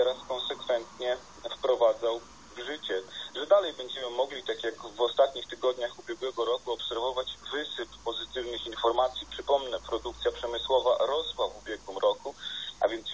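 Only speech: a voice from a radio broadcast, talking without pause, with a narrow, telephone-like tone.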